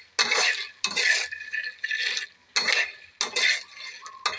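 Metal spatula scraping across a metal pan and turning kabok (wild almond) seeds as they dry-roast, the hard seeds rattling against the pan. There are about five separate strokes.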